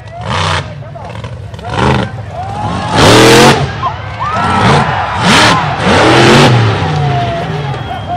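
Mega truck on tractor tyres revving hard in repeated surges, its engine pitch climbing and falling as it throws dirt on the course, with the loudest burst of throttle about three seconds in. People shout over the engine.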